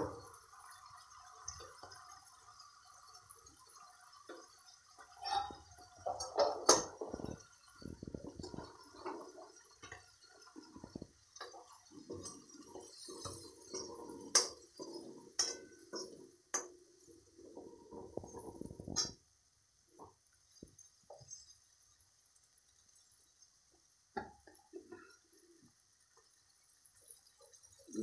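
Clinks and scraping of a metal spatula in a metal kadhai as green peas and ground spices are stirred. There are a few sharp clicks among the scraping, busiest between about 5 and 19 seconds in, then only occasional faint clicks.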